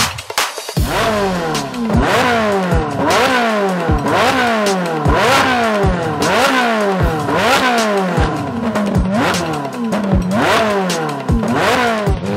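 Ferrari 458's flat-plane V8 revved again and again while stationary, its pitch climbing quickly and dropping back more than once a second, over electronic music with a steady beat.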